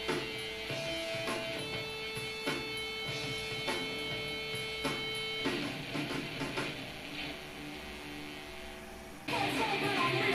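Instrumental music with plucked guitar: held notes over a soft beat about once a second, changing about five and a half seconds in, then a louder, busier guitar passage cutting in abruptly near the end.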